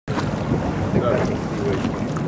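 Steady wind buffeting the microphone aboard a boat on choppy open water, with the rush of water beneath it and faint voices mixed in.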